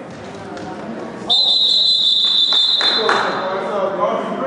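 A referee's whistle blown in one long steady blast of about two and a half seconds, starting a little over a second in.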